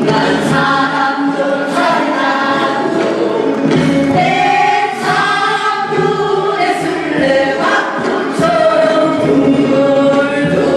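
Korean changgeuk (folk opera) singers singing together in chorus, in long held notes.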